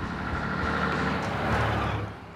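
1961 DAF 2000 DO truck with a Leyland six-cylinder diesel driving by on the road, its engine and tyre noise steady and growing slightly louder toward the end as it nears.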